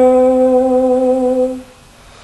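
A man's singing voice holds one long, steady note of a show tune, which ends about a second and a half in.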